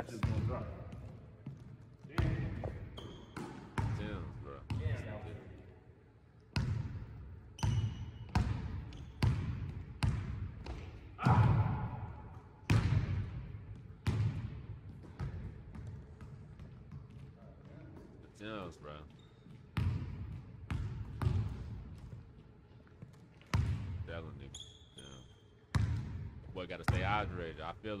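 A basketball dribbled on a hardwood gym floor: irregular hard bounces, each ringing on in the echo of the large empty hall.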